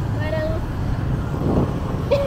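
Steady low rumble of city street traffic, with a brief snatch of voice near the start.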